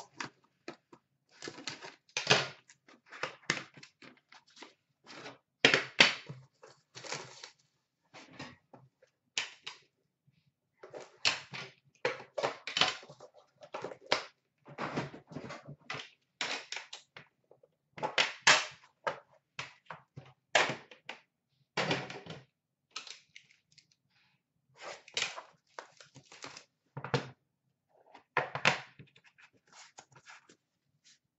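Irregular knocks, taps and scrapes from unpacking a box of Upper Deck The Cup hockey cards: the cardboard outer box is handled and opened, and the metal tin inside is set down on a glass counter and its lid opened.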